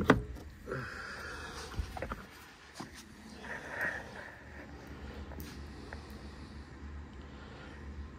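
A few sharp metallic clicks as the brass A/C expansion valve block and its refrigerant lines are worked loose by hand, the loudest right at the start, then faint handling noise and low room hum.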